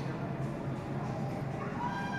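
Ice rink crowd ambience during a hockey game: indistinct voices from the bench and stands echoing in the arena, with one short high call that rises and falls near the end.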